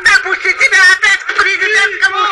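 Speech only: a woman talking rapidly in a high, animated voice.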